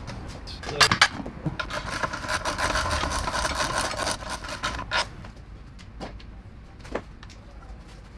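Hand ratchet wrench turning out a lower transmission-to-engine bolt: a fast run of metallic ratcheting clicks for the first few seconds, then a few single clicks.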